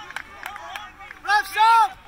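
A spectator's voice near the microphone shouting twice near the end, a short shout and then a longer one, over faint background voices.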